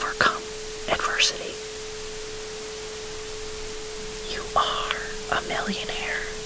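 Whispered affirmations in short phrases over a steady 432 Hz tone and a constant bed of noise. There are brief phrases at the start and about a second in, a pause, then more whispering from about four and a half seconds in.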